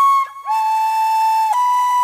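Solo flute music playing long held notes one at a time. The first note breaks off just after the start, a lower note follows, then the melody steps up to a higher held note about halfway.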